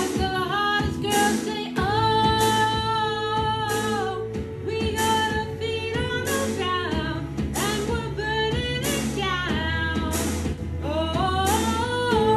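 A woman singing a pop song in full voice over instrumental accompaniment with a steady beat. She holds long notes about two seconds in and again near the end.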